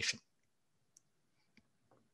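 The tail end of a man's speech, then a pause of near silence broken by a few faint clicks.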